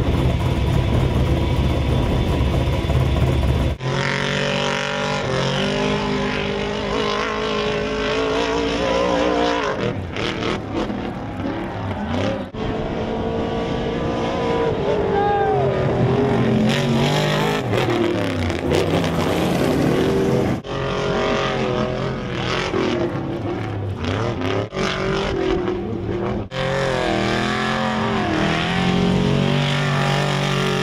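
Off-road race trucks' engines revving hard and accelerating across sand, pitch climbing and dropping with throttle and gear changes. The sound cuts abruptly from one run to the next several times.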